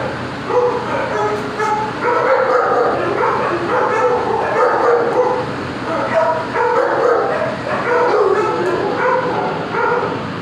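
A dog whining and yipping in a continuous string of short, high, wavering calls.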